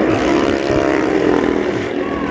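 Motorcycle and small-car engines running hard together in a steady drone as they circle the wooden wall of a well-of-death drum.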